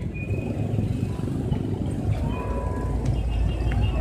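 Busy road traffic: a steady low rumble of passing vehicles, with a faint thin tone a little over two seconds in.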